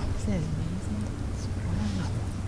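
Faint, distant voices over a steady low hum of room or sound-system noise.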